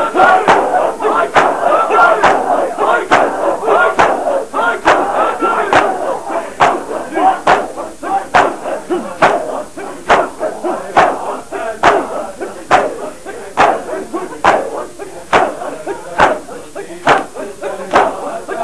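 A crowd of men doing matam, striking their bare chests in unison about once a second, with many voices shouting and chanting over the beat. The voices are densest in the first few seconds, and after that the sharp chest slaps stand out more.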